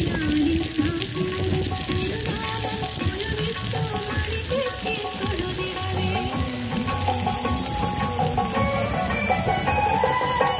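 Fountain water splashing in a steady hiss, with music playing over it, a wavering melody throughout.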